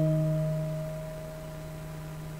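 The song's final keyboard chord ringing out and slowly fading away over a faint steady hiss.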